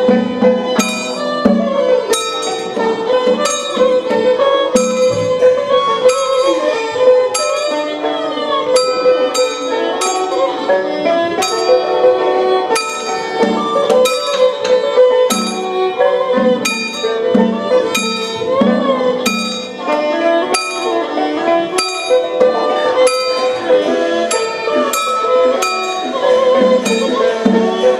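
Traditional Taiwanese Taoist ritual music: a melody with pitch slides played over a steady tone, punctuated by regular percussion strikes.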